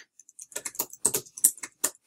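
Typing on a computer keyboard: a quick, uneven run of key clicks, about seven a second.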